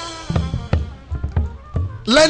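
A live band playing in a gap between sung lines: about five drum kit strokes over low bass notes.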